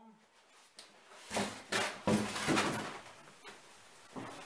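Rustling and scraping of packaging: a polystyrene foam insert being lifted off a cardboard box and set aside, in a run of loud rustles between about one and three seconds in.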